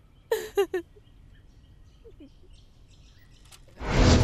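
A woman's voice in a brief tearful catch or sob, then a quiet stretch with faint bird chirping in the background. Loud music comes in just before the end.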